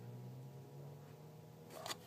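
Faint steady low hum of room tone, with a brief rustle near the end.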